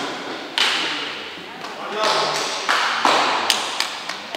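Sharp smacks ringing in a large, echoing hall, mixed with spectators' voices, then a few quick hand claps near the end.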